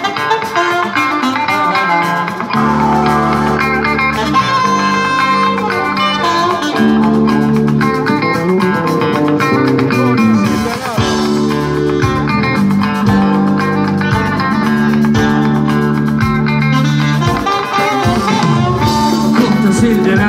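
Live band music led by electric guitar over a steady bass and drum groove, played loud on a concert stage.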